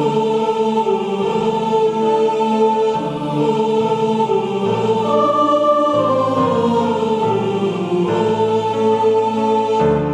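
Choir singing a slow Korean Christmas anthem in unison over piano accompaniment, the melody moving in short stepwise phrases over held lower notes.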